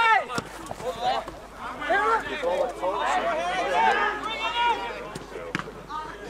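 Several men shouting during outdoor football play, their calls overlapping most thickly in the middle, with a few sharp knocks among them.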